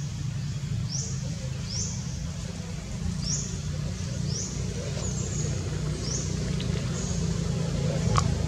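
A short, high chirp sliding down in pitch, repeated about once a second, over a steady low rumble like a running motor.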